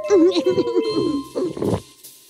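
A cartoon character's wordless, warbling voice sounds over children's cartoon background music, with a slow falling whistle-like tone. It all drops away near the end.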